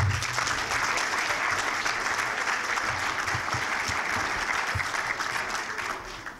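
Audience applauding, starting all at once and holding steady for several seconds before fading out near the end.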